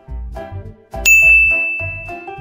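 Light background music with a steady beat; about a second in, a single loud ding sound effect, a high bell-like tone that rings on and slowly fades.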